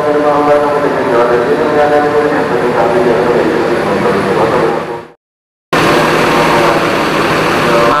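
A vehicle engine running steadily with a droning, pitched hum in a large, echoing shed. The sound cuts off abruptly about five seconds in for half a second, then returns as a steady rushing noise.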